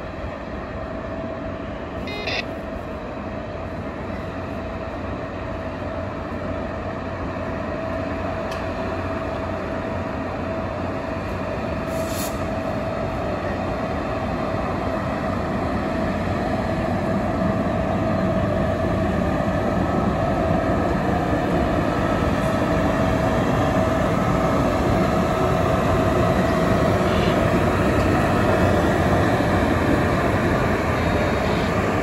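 Shaoshan SS8 electric locomotive running light over the station trackwork, its running noise and a steady whine growing steadily louder as it approaches.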